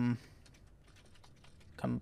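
Faint typing on a computer keyboard, a word keyed in letter by letter, between the tail of a man's drawn-out "um" at the start and his next word just before the end.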